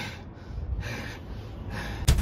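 A man breathing hard, about three heavy breaths, winded after shouting and straining.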